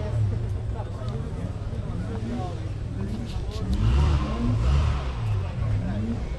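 Rally car engine revving, its pitch climbing again and again as it accelerates through the gears, getting louder about four seconds in, with spectators talking.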